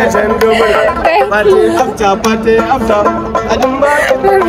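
A man singing a praise song with a wavering melody while plucking a small gourd-bodied lute, a steady low note running under the voice.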